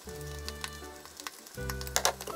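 Egg omelette sizzling and crackling in a frying pan on the stove as ketchup rice is spooned onto it, under background music, with a sharp click near the end.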